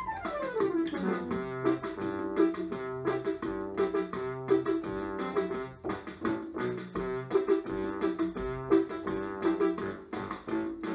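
Electronic keyboard playing a song's instrumental introduction: a falling glide in pitch in the first second, then a tune over a steady beat.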